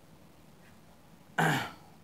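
A man coughs once, sharply, a little under a second and a half in, after a stretch of faint room tone.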